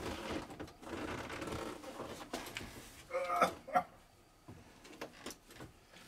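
Low shuffling and scraping of a man climbing down out of a Steyr-Puch Pinzgauer's high cab through the open door, with a short burst of voice about three seconds in.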